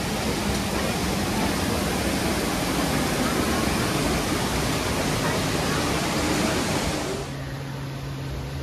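Waterfall rushing down rockwork, a steady loud noise. About seven seconds in it cuts away to a quieter background with a low steady hum.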